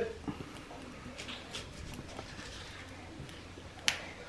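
Quiet handling of folded corn-tortilla tacos filled with crunchy pork rinds on a wooden cutting board: faint scattered crackles, then one sharp click near the end.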